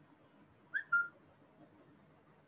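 Two short, high whistle-like chirps in quick succession about a second in, the second a brief steady note, over faint room hiss.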